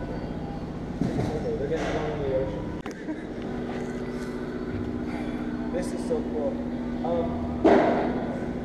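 Indistinct talking over a steady hum, with a sharp click about three seconds in and a brief louder burst near the end.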